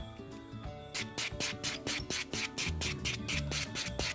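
Background music, and from about a second in a fast run of rasping strokes, about six a second: a pink buffer block rubbing across acrylic nails on a nail trainer hand.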